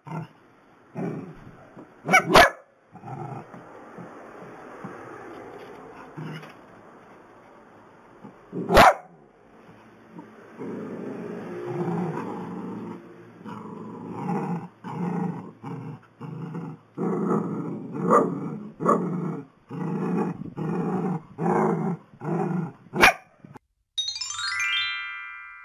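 Long-haired dachshunds barking: scattered barks at first, a quieter stretch, then from about ten seconds in a steady run of barks about two a second. A few sharp, loud cracks stand out above the barking, the last near the end.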